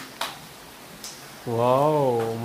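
Steady hiss of heavy rain, with a few sharp ticks in the first second. About a second and a half in, a voice breaks in with a loud, drawn-out, wavering call.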